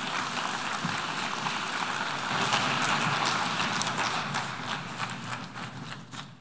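Audience of delegates applauding: dense, even clapping that thins out and fades over the last second, leaving a few scattered claps.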